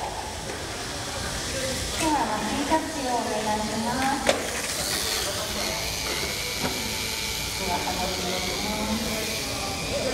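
Indistinct voices in a busy event hall over a steady hiss, with a few sharp clacks; a thin, steady high tone enters about halfway through.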